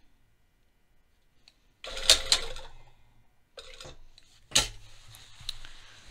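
Industrial single-needle sewing machine starting with a sharp click about halfway through, then running slowly with a low motor hum and a few light needle clicks as it top stitches stretch-woven fabric. Fabric is handled on the machine bed just before.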